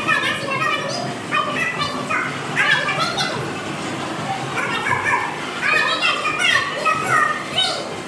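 High-pitched voices talking and calling over one another throughout, like children playing.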